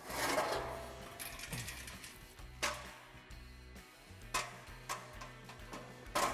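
Aluminium loading ramps being slid out and set against a steel trailer deck: a scraping slide at the start, then three sharp metallic knocks as the ramps are placed.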